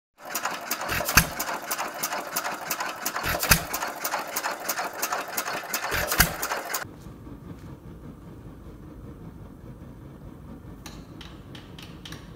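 Fairbanks Morse Z headless hit-and-miss stationary engine running: a fast steady clatter from the engine's works, with a heavy firing bang about every two and a half seconds. The sound stops abruptly after about seven seconds, and a quieter low steady rumble follows, with a few sharp clicks near the end.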